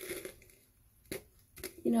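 Short scratchy strokes of a hairbrush through long curly hair: one about a second in and a fainter one just before a word near the end.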